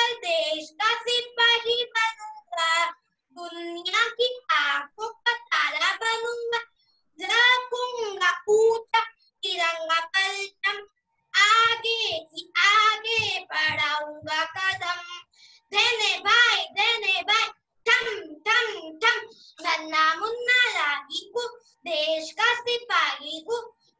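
A child singing a patriotic song solo and unaccompanied, in phrases with wavering held notes and short breaks between them, heard through a video call's audio.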